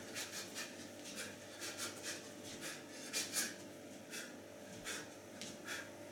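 Bare feet brushing and scuffing on carpet as a boxer steps and shuffles in stance: a run of soft, irregular scrapes, a few a second.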